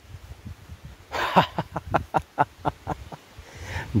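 Quick, rustling, crackling steps through leafy forest undergrowth, about six strokes a second for a couple of seconds, with wind rumbling on the microphone.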